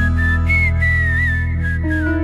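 Flute playing a high, ornamented melody with slides and bends, over sustained low bass and held chords, in an instrumental break of the song.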